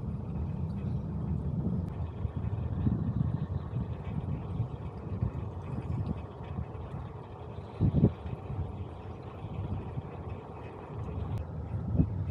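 Wind rumbling and buffeting on the microphone of a camera riding on a moving bicycle, with some tyre and road noise underneath, and a brief knock about eight seconds in.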